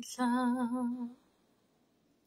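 A woman singing a gospel hymn unaccompanied, holding one note with vibrato for about a second before it stops.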